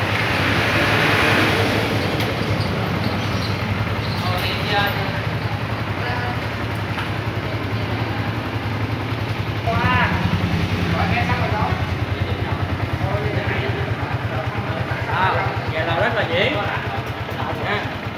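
Yamaha Exciter's single-cylinder engine idling steadily while hooked up to the dealer's diagnostic tool, at an idle speed the tool reads as within spec (about 1,380 rpm against 1,300–1,500). It gets a step louder about ten seconds in.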